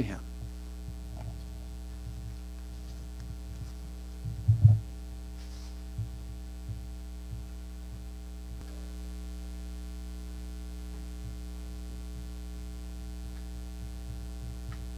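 Steady electrical mains hum in the audio feed. About four and a half seconds in there is one loud low thump, followed by a few faint low thuds.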